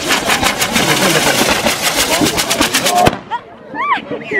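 Fireworks on a torito de pólvora, a bull-shaped frame carried by a dancer, crackling and banging in a rapid, continuous string of loud cracks. The crackling cuts off suddenly about three seconds in, followed by a few short high-pitched sounds that rise and fall.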